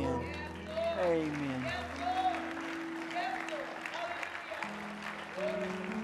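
Worship band's keyboard holding sustained chords as a worship song ends, with a congregation applauding and a voice over the music.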